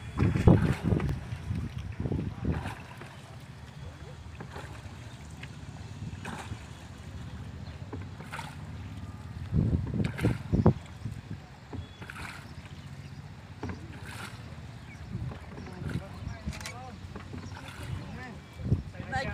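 Water lapping against a paddled wooden shikara, with a splash of the paddle about every two seconds.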